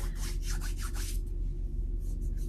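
A hand rubbing and scratching across a beard and chin close to the microphone, a few soft scratchy strokes in the first second that then fade, over a steady low hum.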